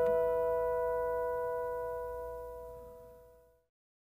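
Bell-like chime sound effect ringing out with clear overtones and slowly dying away, fading to nothing about three and a half seconds in.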